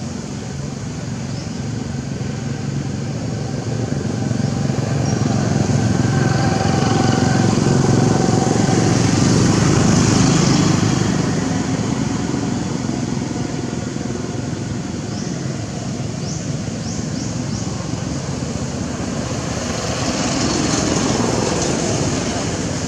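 A motor engine running nearby, a steady rumble that swells louder around the middle and then eases off, like a vehicle passing.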